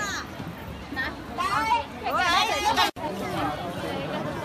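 People talking amid outdoor tourist-crowd chatter, with a sudden break in the sound about three seconds in where the video cuts.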